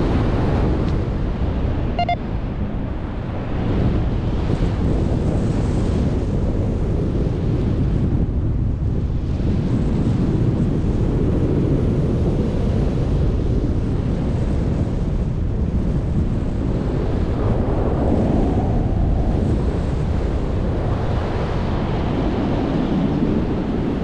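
Airflow buffeting the microphone of a camera on a tandem paraglider in flight: a heavy, steady wind rush without a break. One short beep sounds about two seconds in.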